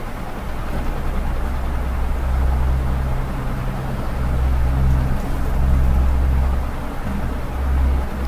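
Steady low hum with a noisy rumble under it, swelling and easing slightly in level, with no speech.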